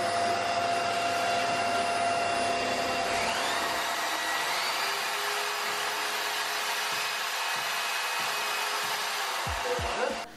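A vacuum cleaner and a corded power drill running together as a hole is bored into a ceiling, a steady machine noise. A tone rises in pitch about three to five seconds in, and there are a couple of low knocks near the end.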